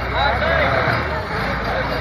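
A box truck's diesel engine idling with a steady low rumble under several people's voices.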